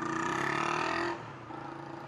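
Motorcycle engine note in traffic, several tones easing slightly down in pitch for about a second, then dropping back to a quieter background rumble.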